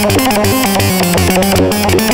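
Novation Peak eight-voice polyphonic synthesizer playing quick runs of short notes over a stepping bass line.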